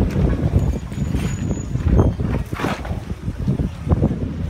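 Street noise from passing vehicles, with wind buffeting the microphone in an uneven low rumble that surges about halfway through.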